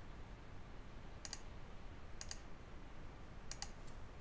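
Faint computer mouse clicks as anchor points are placed, four of them: two about a second apart, then two close together near the end, over low steady background noise.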